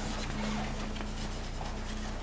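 Chalk scratching faintly across a chalkboard as a word is written out in cursive.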